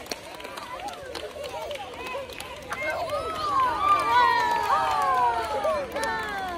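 A group of children chattering, then from about halfway many high voices calling out together in long shouts that fall in pitch, getting louder toward the end.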